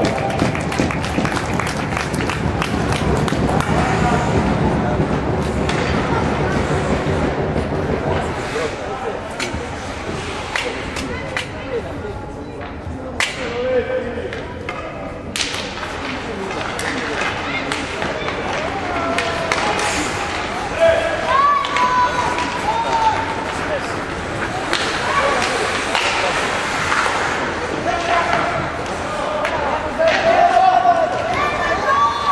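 Youth ice hockey game in play: sharp clacks and thuds of sticks, puck and boards come through repeatedly. Under them run a steady scrape of skates on the ice and indistinct shouting voices in the rink.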